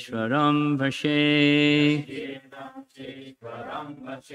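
Sanskrit verse chanted in a melodic male voice, with one long held note about a second in; the chanting goes on more softly and in shorter phrases in the second half.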